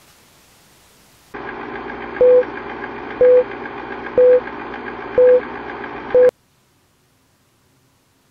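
Film-leader countdown sound effect: a steady whirring noise with a short mid-pitched beep once a second, five beeps in all. It cuts off abruptly on the fifth beep.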